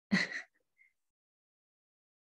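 A woman's short intake of breath.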